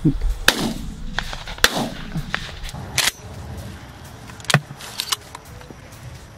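A string of about four shotgun shots about a second or more apart, the first two loudest and followed by a trailing echo.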